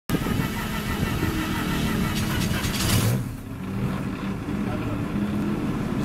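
Pro Formula Mazda race car's rotary engine idling unevenly, its low drone wavering in pitch.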